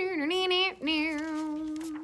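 A woman singing a saxophone imitation with her voice: a short phrase that dips in pitch, then one long held note.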